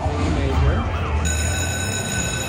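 Electronic sound effects from a video slot machine as a symbol lands on the reels: a warbling tone that glides up and down, then, a little over a second in, a steady held electronic tone, over a constant low hum.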